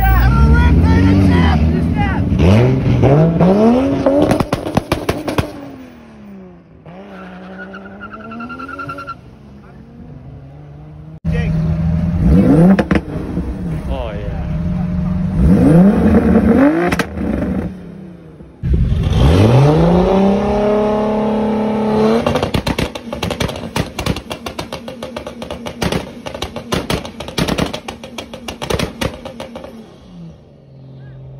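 Tuned performance car engines revving hard in repeated rising sweeps, then held on a two-step launch limiter with a rapid string of crackling pops and bangs over the last several seconds.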